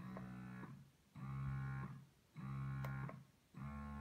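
Spectra 9 Plus electric breast pump motor running in expression mode: a steady hum that starts and stops with each suction cycle, four cycles about 1.2 s apart. A light click sounds about three-quarters of the way through as the vacuum button is pressed.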